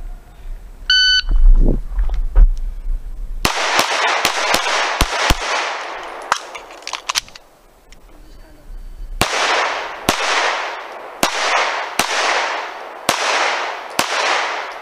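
Electronic shot-timer start beep about a second in, then a USPSA stage being shot with a red-dot pistol. A quick string of shots from about three and a half seconds, a short pause, then a second string of shots about a second apart, each shot echoing.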